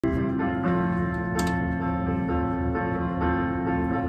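Music from a guitar loop: held chords over a steady low pulse that comes back about twice a second.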